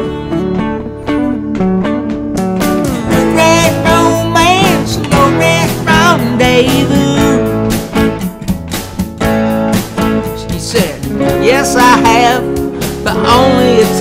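Country song played on a 12-string acoustic guitar with a thumbpick over a backing track with a steady drum beat. A bending lead melody plays over it across the middle and again near the end, with no vocals.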